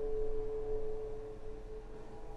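Ambient music: a single held tone with a few fainter tones above and below it, slowly fading away.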